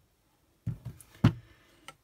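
A clear acrylic stamp block with a rubber stamp mounted on it is lifted and set down on a craft work mat: a dull thump about two-thirds of a second in, a sharp knock just after a second, and a light click near the end.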